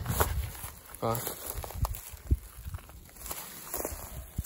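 Footsteps and rustling in dry grass and pine needles, with scattered small clicks and crackles.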